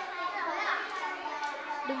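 Many young children's voices overlapping in a classroom babble as several small groups read a lesson aloud at the same time.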